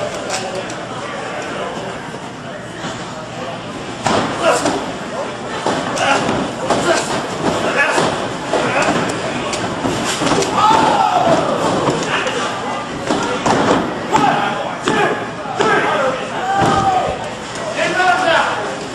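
Wrestling-ring action: repeated thuds and slams of bodies hitting the ring canvas, mixed with indistinct shouting from the crowd, getting louder about four seconds in.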